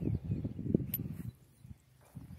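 Close rustling and handling noise with a few soft knocks for about the first second, dying away to faint outdoor quiet.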